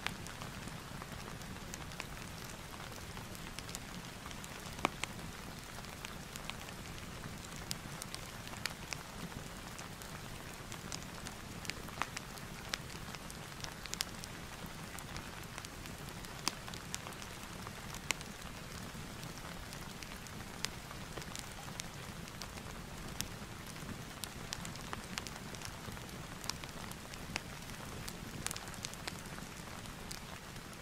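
Steady rain ambience with a fireplace crackling, irregular sharp pops scattered over the even patter.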